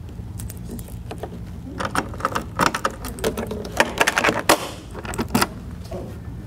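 Keys jangling, with clusters of clicks and knocks, as the top cover of a DS200 ballot scanner is lowered shut and locked.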